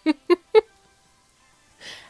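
A woman's short laugh, three quick "ha" bursts, followed by about a second of quiet and a soft inhale near the end.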